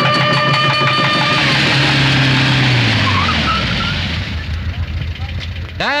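A car running with a steady pitched hum that drops in pitch about halfway through and dies away, as the car slows to a stop.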